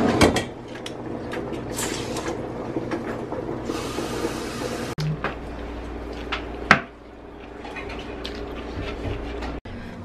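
Metal tongs clinking against a stainless steel steamer pot as steamed kale is lifted out, over a steady kitchen hum, with a brief hiss near the middle and a few sharp clicks later on.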